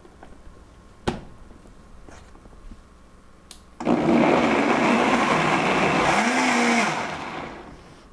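Vita-Mix Total Nutrition Center blender. There is a knock about a second in, then the motor starts suddenly about four seconds in and runs loudly for about three seconds, chopping chunks of cucumber and tomato into a blended romaine-and-water base, before tapering off near the end.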